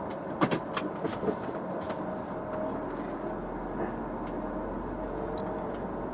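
2005 Audi A4 heard from inside the cabin, driving slowly: a steady engine hum over road noise, with a few sharp light clicks or rattles in the first two seconds. A low rumble strengthens about halfway through.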